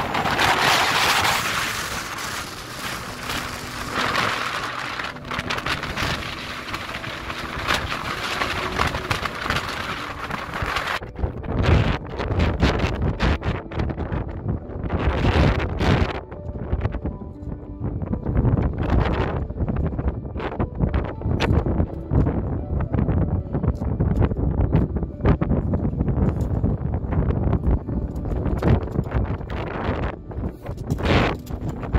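Strong wind blowing across the microphone: a hissing rush at first, turning about eleven seconds in to a deep, gusty rumble. Music plays faintly underneath.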